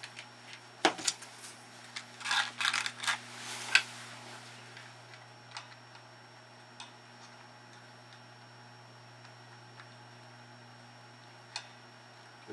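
Sharp clicks and taps of small tools and handling at a workbench, a cluster of them in the first few seconds, then only occasional faint ticks while a soldering iron presses copper desoldering braid onto a solder joint. A low steady electrical hum runs underneath.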